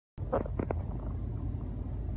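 Steady low rumble of a car's interior, with a few brief faint sounds near the start.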